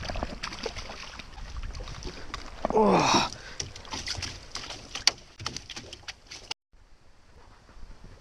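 A fish is netted from the water and lifted into a rowboat. There is splashing, then a run of sharp knocks and clatter as the landing net and flapping fish hit the boat floor. A short voice exclamation comes about three seconds in, and the sound cuts out briefly near the end.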